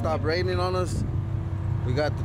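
A 2007 Chevy Silverado's engine idling steadily, with a man's voice over it in the first second.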